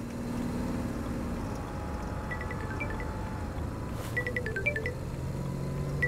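Mobile phone ringtone: a short marimba-like jingle that starts a couple of seconds in and repeats the same phrase, over the low steady rumble of a car interior.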